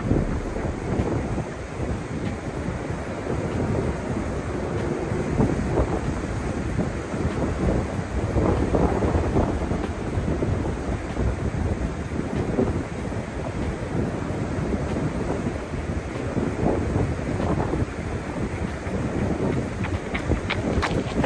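Wind buffeting the microphone, a steady low rumbling noise.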